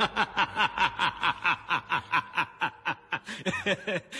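A man laughing in a long, rapid string of short 'ha' bursts, about five a second, each one falling in pitch.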